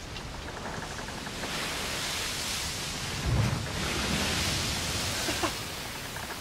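Steady rushing noise with a single low thump a little past halfway.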